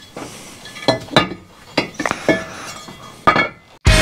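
Metal engine parts and tools clinking and knocking on a workbench during engine assembly: a handful of sharp, separate clinks spread over a few seconds. Loud rock music cuts in abruptly at the very end.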